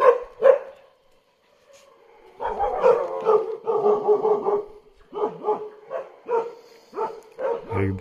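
A dog barking repeatedly. Two barks come at the start, then a short pause, then a run of barks from a couple of seconds in, spaced about half a second apart toward the end.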